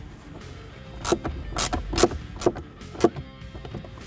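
Five sharp clicks about half a second apart as the 7 mm screw is driven back through the dash-tray mount to secure it, with quiet background music underneath.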